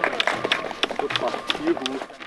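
Scattered hand clapping from a small crowd, a quick run of sharp claps, with a short bit of voice near the end.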